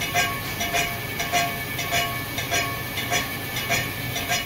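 A milling machine's spindle turns a boring head used as a fly cutter, taking a first facing cut across a warped aluminium two-stroke cylinder head. The cutter strikes the surface in a regular rhythm, about two or three times a second, each strike with a short ring.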